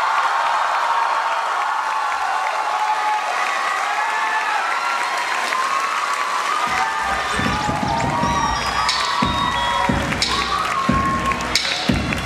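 Concert audience cheering and applauding at the end of a song, full of high shouts and whoops. From about halfway, irregular heavy thumps join in.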